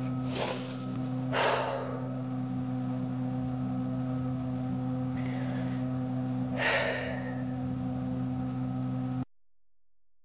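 A woman taking three deep, noisy breaths, about half a second, a second and a half and nearly seven seconds in, over the steady hum of an electric fan. The sound cuts off suddenly near the end.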